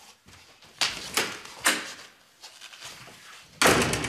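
A few short knocks, then a wooden panel door slammed shut near the end: one loud bang with a brief ring after it.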